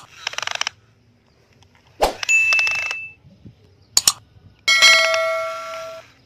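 Subscribe-button animation sound effects: mouse clicks and short swishes, then a bell ringing with several clear tones that fades out near the end.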